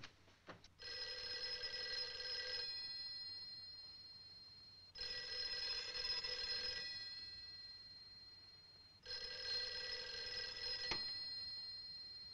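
Desk telephone's bell ringing three times, each ring about two seconds long with a fading tail, the rings about four seconds apart. A short click near the end.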